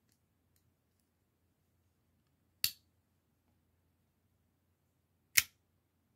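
Two sharp metallic snaps, the second slightly louder, about three seconds apart: a stiletto pocket knife's blade swinging and snapping against its lock as it is worked with the blade release.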